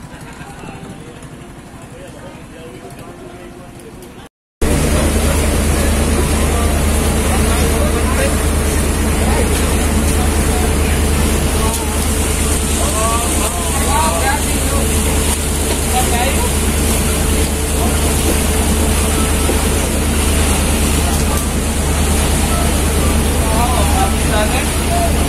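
Steady drone of a boat's engine heard from on board, with water and hiss over it. The first few seconds are quieter, and faint voices come through in places.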